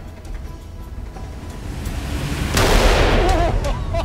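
Dramatic background music building, then a single loud, echoing blast about two and a half seconds in: a .44 Magnum revolver shot in an indoor range.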